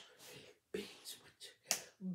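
A few sharp finger snaps in an uneven rhythm, the loudest near the end.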